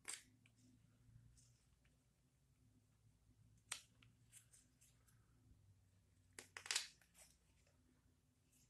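Carving knife slicing thin shavings from a wooden ladle handle as it is tapered: a few short, crisp cuts, one right at the start, one about four seconds in, and a quick run of several near the end, the loudest, with near silence between.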